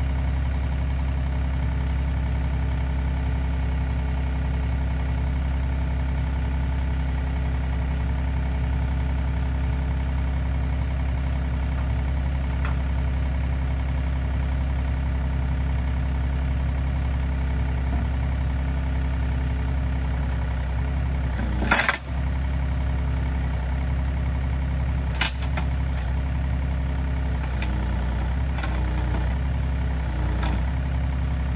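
Wacker Neuson EZ38 mini excavator's diesel engine idling steadily. A brief, sharp, loud noise comes about two-thirds of the way through, with a shorter one a few seconds later and a few faint ones near the end.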